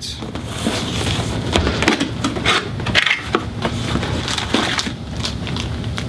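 A cardboard retail box being opened and its packaging handled: a continuous rustle of cardboard and crinkling plastic, with many small crackles and scrapes.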